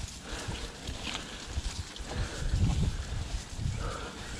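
YT Jeffsy full-suspension mountain bike ridden uphill along an overgrown dirt trail: tyres rolling over dirt, irregular low knocks and rattles from the bike, loudest a little past halfway, and leaves and stems brushing against the bike and rider.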